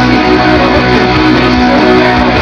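Electric guitar strumming rock chords, played along with the song's own recording, which carries bass and a full band sound.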